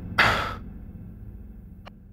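A man's single short, heavy breathy exhale of exertion, like a hard sigh, a quarter of a second in.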